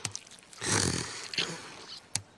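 A cartoon child snoring in his sleep: one long snore about half a second in, then a shorter one.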